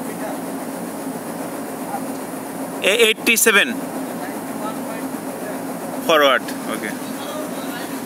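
Steady low drone of a ship's machinery on deck, with a voice calling out briefly twice, about three and six seconds in.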